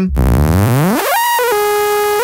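Audio run through a spectral resynthesis plugin, turned into a buzzy synthetic tone. It glides up in pitch over about a second, then holds a steady note.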